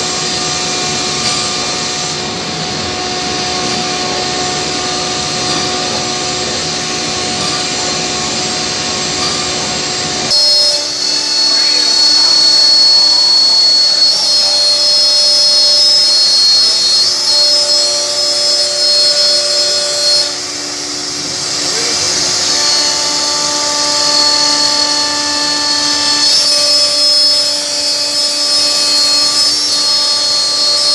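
Holztek R1325-3BF three-spindle CNC nesting router cutting and drilling an industrial wood panel, its spindles whining at steady pitches over the noise of the cut. The sound gets louder and changes pitch about ten seconds in, and the whine shifts pitch again twice later on as the machine works.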